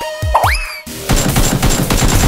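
A rising swoosh transition effect with falling tones, then, about a second in, rapid machine-gun fire sound effects dubbed over background music.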